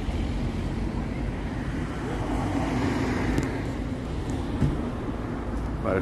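Road traffic rumbling steadily, with a vehicle passing about halfway through.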